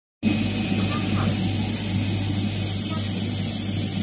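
Steady machine noise from an automatic sewing station: a constant low hum under a strong high hiss, starting abruptly a moment in and holding level throughout.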